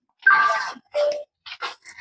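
A person's voice making two or three short vocal sounds with brief silent gaps between them.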